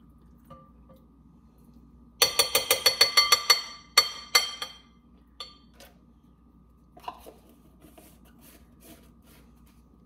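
A utensil tapped against a glass mixing bowl while mayonnaise is shaken off into it: a quick run of about ten ringing clinks over a second and a half, then three more single clinks.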